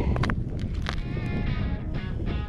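Background music with a held, wavering tone coming in about halfway through, over a steady low wind rumble on the microphone and a few short clicks.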